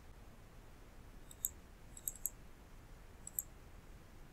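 Computer mouse clicking: a handful of sharp, thin clicks in three small groups, one about a third of the way in, two or three close together near the middle, and another near the end, over a low steady room hiss.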